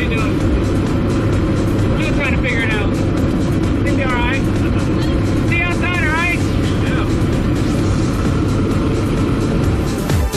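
Steady loud drone of a skydiving plane's engine and propeller, heard from inside the cabin in flight, with a few raised voices calling out over it.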